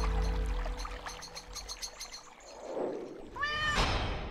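Soundtrack music fading out, with high twinkling notes, then a soft whoosh and a single cat meow that rises and falls near the end.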